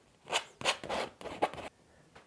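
Palette knife scraping and rubbing oil paint onto canvas in a run of short strokes.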